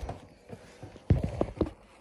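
Handling noise from a hand gripping and moving the camera: a faint knock about half a second in, then three dull thumps in quick succession a little after a second.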